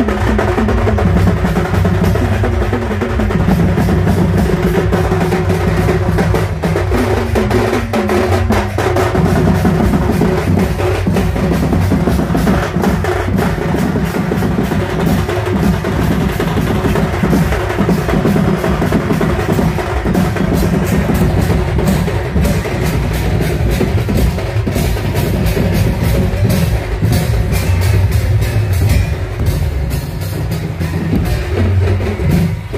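A street drum band playing loudly: large barrel drums beaten in a steady, driving rhythm with clashing brass hand cymbals.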